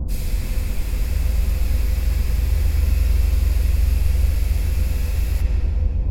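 A loud burst of white-noise static, switched on suddenly and fading out shortly before the end, laid over the heavy bass of a hip hop beat.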